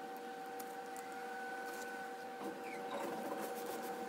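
A steady machine hum holding a few even tones, with light rustling of newspaper pressed against a painted panel, a little louder about three seconds in.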